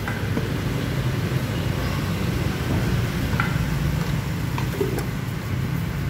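A steady low mechanical rumble, with a few light clicks in the second half.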